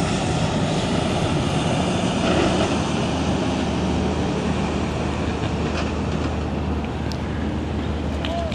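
A semi tractor-trailer passing close by: steady diesel engine drone with tyre and road noise, easing slightly near the end.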